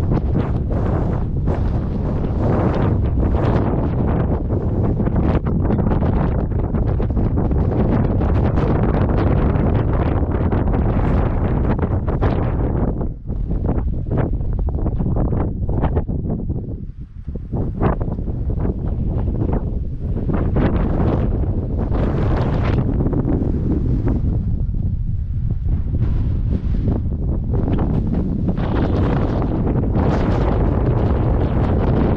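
Strong wind buffeting the microphone: a loud, rumbling roar that surges in gusts and eases briefly twice around the middle.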